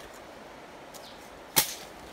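One sharp, loud crack about one and a half seconds in, over a faint outdoor background.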